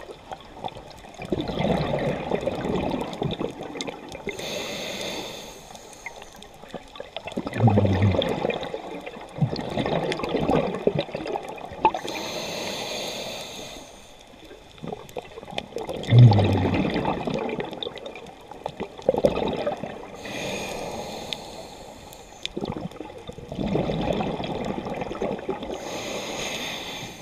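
Scuba diver breathing through a regulator underwater: a short hissing inhale, then a long bubbling exhale, repeating in slow cycles about every eight seconds.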